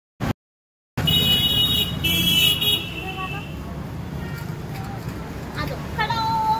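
Road traffic with a horn: two loud, high-pitched blasts in the first three seconds, the second falling away at its end, over a steady low rumble.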